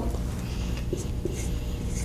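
Dry-erase marker writing on a whiteboard: a couple of short taps of the tip, then faint squeaky strokes in the second half.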